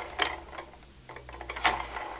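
Homemade axial flux alternator with saw-blade magnet rotors spinning after a hand spin, giving irregular clicks and light rattling over a low hum, the noise of a rotor on makeshift bearings that is not held down. The loudest click comes about one and a half seconds in.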